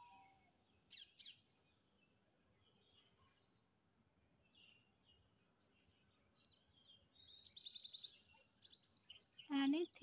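Small birds chirping faintly in the background, scattered short calls with a quick run of repeated chirps about eight seconds in.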